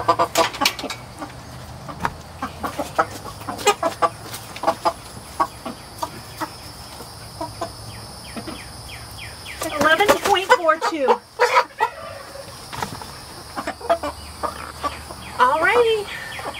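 Cornish Cross broiler chickens clucking in short, scattered calls, with a louder flurry of calls about ten seconds in.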